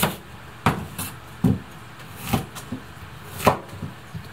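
Kitchen knife cutting peeled potatoes into large chunks on a cutting board: about six irregularly spaced knocks as the blade goes through and meets the board.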